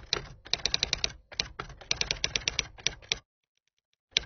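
Typewriter sound effect: rapid key clacks in a few quick runs with short breaks, stopping a little after three seconds in.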